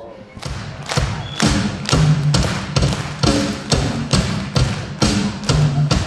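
Drum kit played in a steady rock beat, starting just after the start, with strong hits about twice a second and lighter strokes between them.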